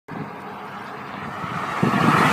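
Engine and tyre noise heard from inside a moving car, steady at first and swelling near the end as an oncoming car passes close by.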